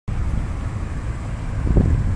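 Wind buffeting the microphone, a low fluctuating rumble.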